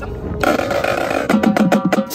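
Marching drumline playing: a sustained crash about half a second in, then a quick, even run of snare and drum strokes.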